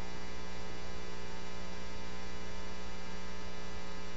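Steady electrical mains hum with a buzzing edge, unchanging throughout: the background hum of the sermon recording, heard while the preacher pauses.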